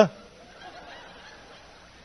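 The tail of a man's drawn-out, comic "duh!" cuts off right at the start. It is followed by a quiet pause holding only faint room sound.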